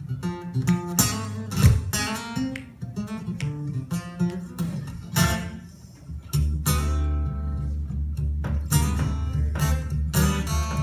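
Guitar played solo in a loose blues vamp: sharp strummed chord strokes and picked single notes. From about six seconds in, a low bass note rings steadily under repeated strums.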